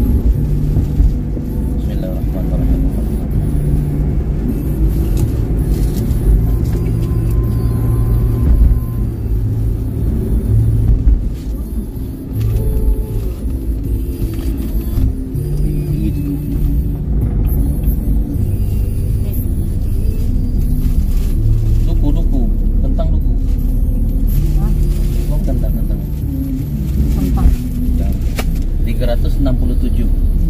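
Steady low road rumble inside a moving car, with music playing over it; its held low notes change every few seconds.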